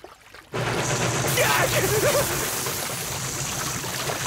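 Water gushing and splashing, starting suddenly about half a second in and running on steadily. A short wavering vocal cry sounds partway through.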